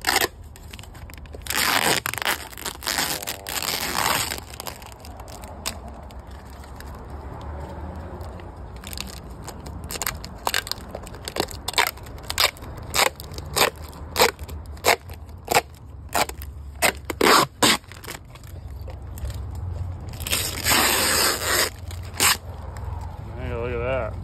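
Clear protective plastic film being peeled off a new Power-Pole shallow-water anchor: a steady run of crackles and sharp snaps, with longer tearing rushes near the start and again near the end.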